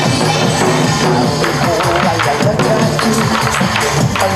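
Korean trot song backing track playing, with buk barrel drums struck by hand-held sticks in time with the beat.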